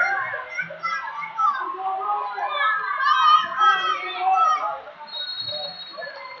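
Many voices at once from spectators and coaches around a wrestling mat, shouting and calling over one another in a big hall.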